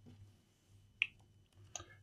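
Near silence broken by one short, sharp click about a second in and a couple of faint ticks near the end: small handling clicks at a laptop being plugged in for testing.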